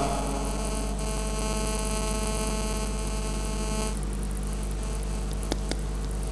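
Steady electrical mains hum with a buzz of many higher steady tones in the sound system; the higher buzz cuts off about four seconds in, leaving the low hum, with a couple of faint clicks near the end.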